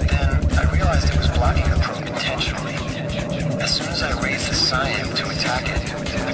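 Psytrance track playing: a fast rolling bassline pulses until about two seconds in, then drops out, leaving synth effects and a spoken voice sample.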